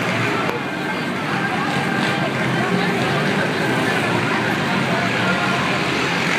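Four-stroke youth motocross dirt bikes racing on a dirt track, their engines running steadily over continuous crowd chatter.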